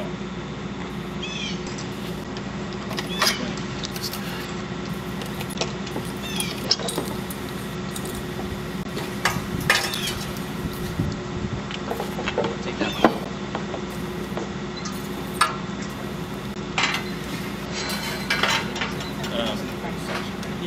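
Dieselcraft FPS-PW fuel-tank washing and filter system running with a steady pump hum, circulating through both its bag filter and its cartridge filter. Scattered metallic clinks and taps sound over the hum.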